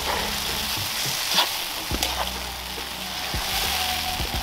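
Chopped tomatoes and onions sizzling steadily as they fry in a metal pot, stirred with a slotted metal spoon, with a few light knocks of the spoon against the pan.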